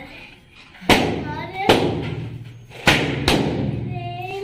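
Four sharp thumps at uneven spacing, over voices in a room.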